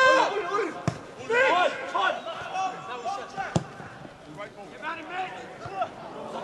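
Footballers shouting to each other on the pitch, with two sharp thuds of a football being kicked, about a second in and again about three and a half seconds in.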